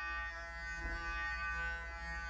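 Clarisonic Mia Smart sonic brush with its foundation brush head running: a steady electric buzz with a low hum.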